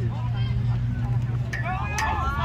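Spectators' and players' voices calling out across a field during a rugby league match, louder shouts coming in near the end, over a steady low hum.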